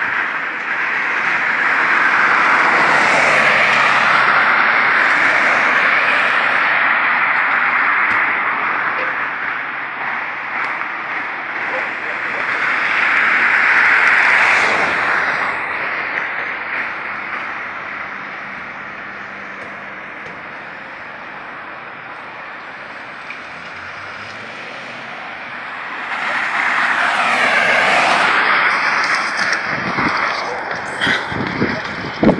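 Road traffic passing on a city street: tyre and engine noise swells and fades three times, a few seconds in, about halfway through, and again near the end.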